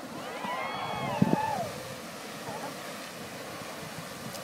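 Grand Geyser erupting: a steady rush of water and steam. Over it, several onlookers cheer and whoop with rising and falling voices in the first second or two, when it is loudest.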